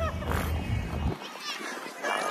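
A person clears their throat over a low rumble on the microphone, which cuts off suddenly just over a second in. Then comes a brief high, squeaky vocal sound.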